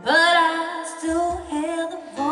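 A woman singing a long held phrase that bends slightly in pitch, with a few low cajón strokes underneath about halfway through.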